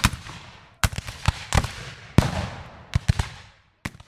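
Gunfire sound effect: about ten sharp shots at uneven intervals, each trailing off in an echo, like a scattered musket skirmish, with a last lone shot near the end.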